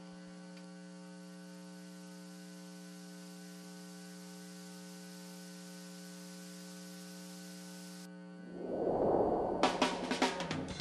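Steady electrical mains hum with a stack of overtones on the broadcast audio, unchanging for about eight seconds. It then cuts off and a swelling whoosh rises, with the first sharp hits of a station ident's music just before the end.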